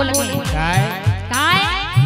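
Instrumental break in a live Holi folk song. Drum strokes with a bass that bends in pitch, jingling percussion, and sliding tones that sweep up and down in pitch, most strongly in the second second.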